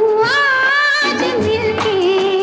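Hindi film song: a singing voice holds long, steady notes without words over light accompaniment, stepping up in pitch about a quarter second in.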